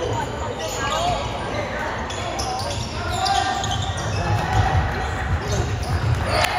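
Basketball game sounds in a school gym: the ball bouncing on the hardwood court, short sneaker squeaks, and spectators' voices, all echoing in the large hall.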